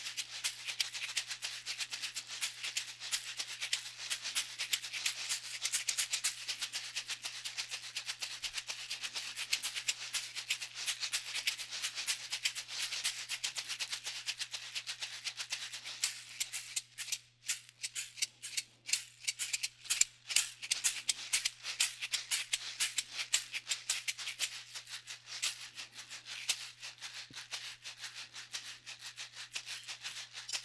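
Woven caxixi basket shakers played in a fast, continuous rhythmic shaking of seeds against the basket walls. About halfway through the rhythm thins to separate, spaced accented strokes, then the dense shaking resumes.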